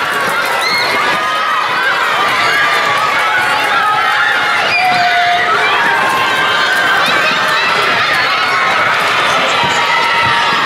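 A crowd of children shouting and cheering, many high voices overlapping at a steady level.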